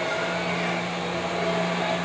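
A steady mechanical whirring hum with a low drone and a fainter hiss above it, not changing in pitch or level.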